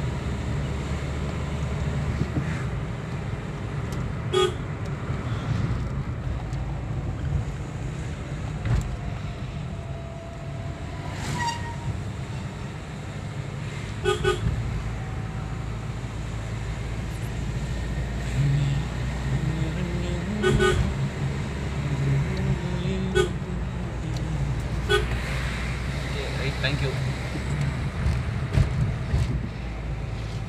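Engine and road noise heard from inside a vehicle's cabin on a winding hill road, with about five short horn toots spread through it.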